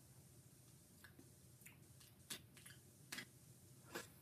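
Near silence: faint room tone with about half a dozen short, faint clicks and smacks scattered through it.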